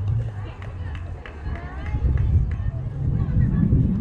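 Distant voices and chatter of players and spectators around a baseball field, with a low rumble that grows louder about halfway through.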